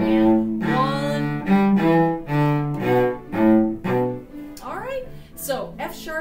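Cello played with the bow: a run of even, separate notes in a square rhythm, about two notes a second, that stops about four seconds in. A woman's voice follows near the end.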